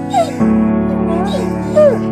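A Doberman whining in several short wavering rising and falling cries over steady piano-like music, the loudest cry near the end.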